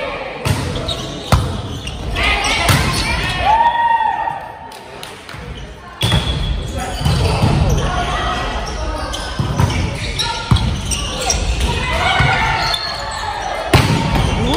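Volleyball being struck during rallies in a large gymnasium: sharp slaps of hands on the ball, with players' voices calling and shouting around them. The hardest hit comes near the end, as a player spikes at the net.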